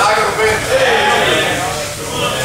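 Voices of spectators and coaches calling out to the grapplers, with no clear words.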